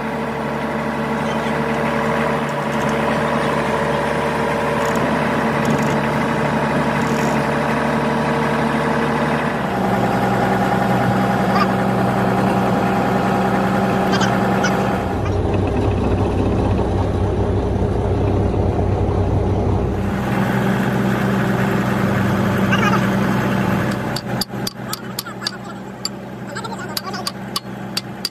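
Komatsu D155A bulldozer's diesel engine running steadily, its note changing in steps several times. Near the end, sharp metal taps about twice a second, like hammer blows.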